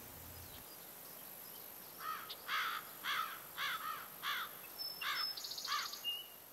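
Soundtrack nature ambience: after a quiet start, a run of about eight short chirps, roughly two a second, with a faint fast high trill near the end.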